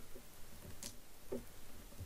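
Faint crinkling and small ticks of copper foil tape as it is peeled from its white paper backing and pressed down onto paper by hand.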